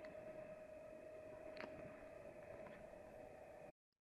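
Near silence: faint steady background hum, with a faint tick or two, cutting to dead silence near the end.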